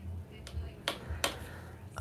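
Three light clicks of a paintbrush's handle knocking against other brushes and its holder as an angle brush is picked up, over a faint low room hum.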